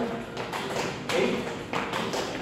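Sneakers tapping and thudding on a wooden floor as several people kick their feet up and set them down, a handful of uneven taps through the two seconds.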